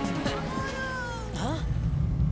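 A drawn-out, falling, meow-like vocal whine ending in a short dip and rise of pitch. Then a low, steady vehicle engine rumble comes in near the end.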